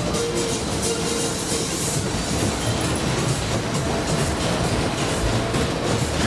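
Matterhorn-type fairground ride running at speed: the cars' wheels rumble and clatter steadily on the circular track, with fairground music underneath.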